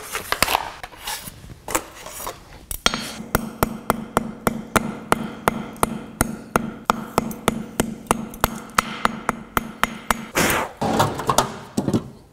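A steady run of light metal-on-metal hammer strikes on an anvil, about three to four a second, knocking the brittle flux coating off a stick-welding electrode so that the bare core wire is left.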